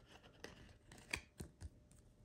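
Pokémon card being slid into a rigid plastic card saver: a few faint ticks and scrapes of card and plastic rubbing, the clearest just after a second in.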